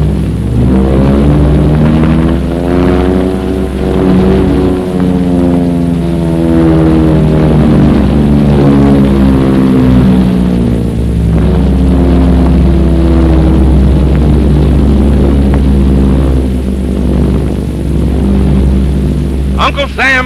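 Several propeller-driven biplanes droning in formation flight, their engine pitch slowly rising and falling as the planes pass.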